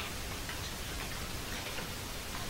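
Steady hiss of an old videotape recording with a few faint, soft ticks spread through it.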